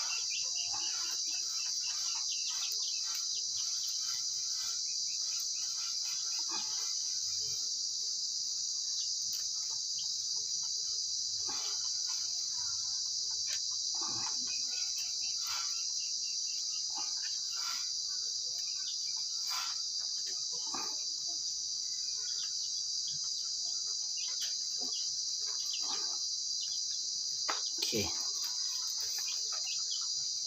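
A steady, high-pitched insect chorus, with scattered light clicks and knocks of bamboo sticks being handled and fitted together.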